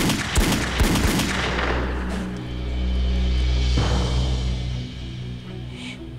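Several handgun shots fired in quick succession within about the first second, followed by dramatic score music with a deep sustained drone.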